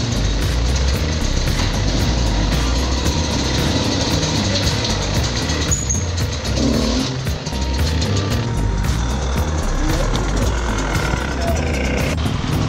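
Enduro dirt bike engine running under background music with a steady beat.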